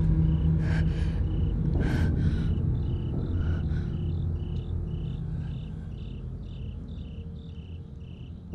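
Crickets chirping in a regular, repeating rhythm over a low rumbling drone that slowly fades away. Two brief soft sounds come at about one and two seconds in.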